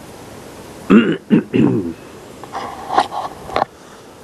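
A man clearing his throat and coughing: a few short voiced grunts about a second in, then rougher throat noise with a couple of sharp clicks later on.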